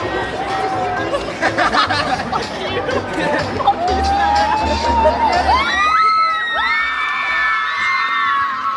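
Young crowd chattering and cheering, with long high-pitched squeals rising and holding over the babble in the second half.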